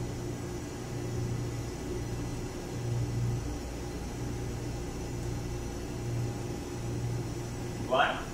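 Steady low hum of shipboard machinery and ventilation in an engine control room, wavering slowly in strength.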